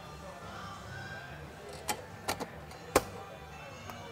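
A handful of sharp clicks and knocks as a trim cover of a vertical rod panic device is fitted onto the door, the loudest about three seconds in as it snaps into place.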